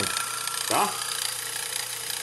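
Bench drill's electric motor running steadily with a low, even hum. Its bearing is newly seated in a bushing pressed into the end cover, and the motor sounds like it is running without trouble: apparently the problem is solved.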